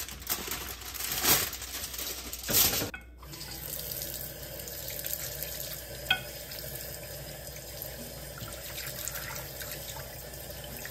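Aluminium foil crinkling as it is pulled off a glass baking dish, with two loud rustles. About three seconds in it gives way to a kitchen tap running steadily into a glass dish in a stainless steel sink as raw duck legs are rinsed under it, with one light clink about six seconds in.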